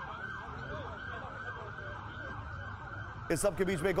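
Emergency vehicle sirens wailing, several rising-and-falling tones overlapping. A man's voice comes in near the end.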